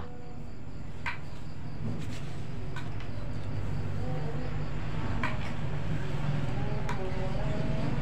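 A steady engine hum that slowly grows louder, like a motor vehicle running and drawing nearer. About five sharp clicks fall across it.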